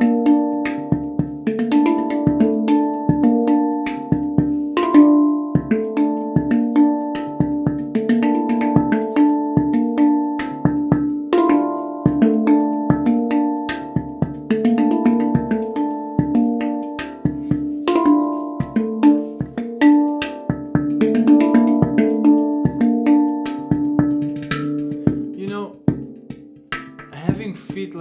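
Handpan played by hand in a steady, fast groove: ringing steel notes struck several times a second, mixed with sharp percussive taps on the shell, softening near the end.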